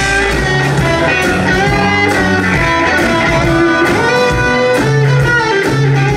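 Live blues-rock band playing an instrumental stretch, with electric guitar lines over keyboard, bass and drums.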